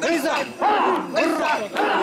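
A group of mikoshi bearers shouting a rhythmic carrying chant together, about two calls a second. This is the call that keeps the bearers in step under the portable shrine.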